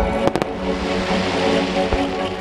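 Music playing over loudspeakers to accompany a choreographed fireworks display, with firework bursts heard through it: a few sharp cracks within the first half-second and a deep boom near the end.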